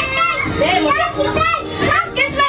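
Several children talking and calling out over one another, their high voices overlapping.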